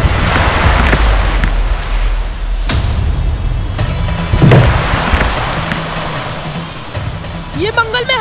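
Water rushing and crashing over a dramatic background score. A sharp hit comes about two and a half seconds in and a deep boom about halfway through. A voice begins just before the end.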